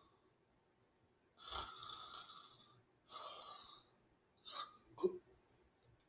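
A man snoring with his head tipped back, mock-asleep: two long breathy snores, then two short, sharper sounds near the end as he comes to.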